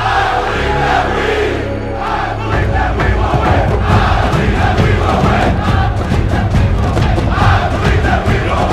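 Music track with a crowd cheering and chanting over it; a heavier bass beat comes in about two and a half seconds in.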